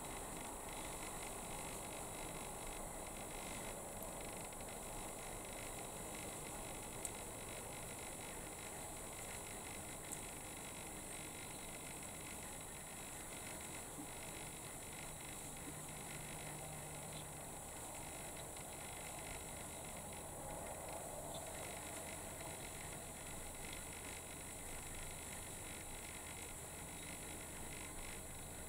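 Faint steady background hiss and low hum of room tone, with two tiny clicks about seven and ten seconds in.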